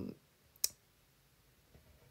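A single sharp click about two-thirds of a second in, after the tail of a spoken "um".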